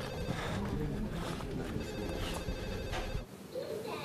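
A mobile phone ringing.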